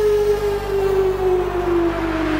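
Electronic dance music in a beatless breakdown: a synth tone slides slowly downward in pitch over a steady low drone, while a hissing noise sweep grows louder toward the end.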